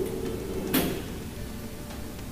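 A single sharp metallic click of bar tools, a jigger against a metal cocktail shaker, about three-quarters of a second in, over a steady low hum.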